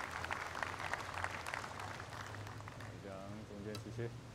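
Spectators' applause, a fairly dense patter that fades away over the first two seconds or so; a voice speaks briefly near the end.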